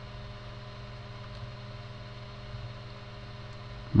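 Steady low electrical hum with faint hiss from the recording chain, with no other clear sound.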